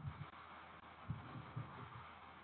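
Faint hiss from an open microphone on an online call, with a few dull low thumps, three or four of them close together about a second in.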